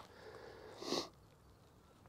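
A single short sniff, a quick breath in through the nose, about a second in, against a quiet background.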